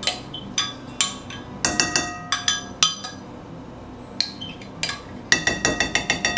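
A spoon scraping and tapping sour cream out of a glass measuring cup into a glass mixing bowl: a run of sharp clinks, each with a short ringing tone, coming thick and fast near the end.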